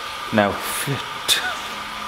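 Steady hum of running brewery equipment with a thin constant tone, under a man's single spoken "no"; a brief hiss and a click follow the word.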